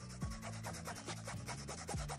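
Alcohol prep pad scrubbed quickly back and forth over the pebbled surface of a football, a fast run of short scratchy rubbing strokes.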